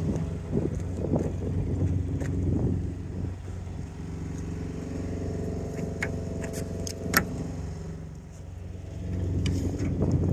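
Kenworth T660 semi truck's diesel engine idling steadily, with a couple of sharp clicks about six and seven seconds in.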